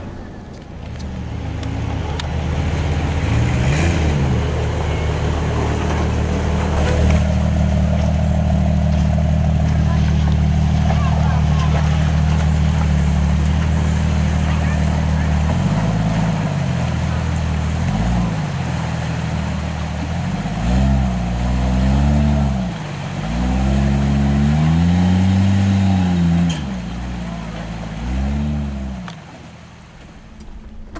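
Off-road 4x4 engine running at steady revs. About halfway through it changes to an engine revved up and down again and again in short surges, as a lifted Jeep Cherokee works its way through a rocky creek crossing.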